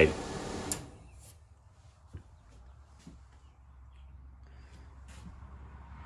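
Range hood exhaust fan blowing, switched off suddenly under a second in. A few faint clicks and knocks of handling follow.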